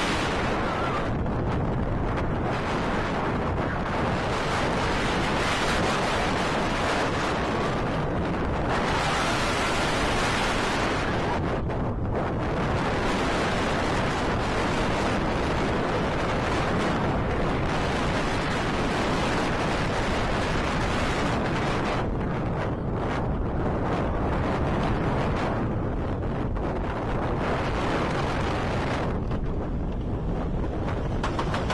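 Wind rushing over the microphone of a rider-mounted camera together with the steady rumble of a Vekoma Suspended Looping Coaster train running along its steel track at speed. The upper hiss surges and eases several times as the train twists through the course.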